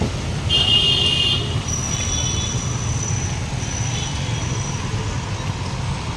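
Road traffic on a busy bazaar street: a steady low engine rumble, with a brief high-pitched tone about half a second in, lasting about a second.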